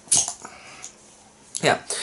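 Crown cap levered off a glass beer bottle: a short, sharp pop with a hiss of escaping carbonation just after the start.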